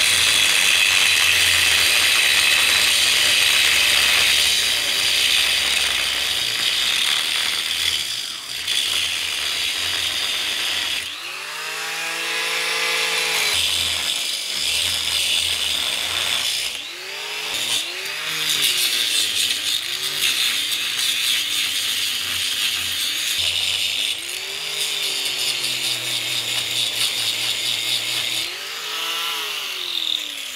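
Angle grinder cutting through steel anchor bolts sticking up from a concrete floor: a loud, high-pitched metal-cutting grind. The motor's pitch drops and climbs again several times as the disc bites into the steel, is lifted off and is set back to the next bolt.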